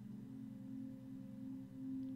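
Soft background drone music: a few low tones held steadily, like a singing bowl, the upper tone slowly wavering.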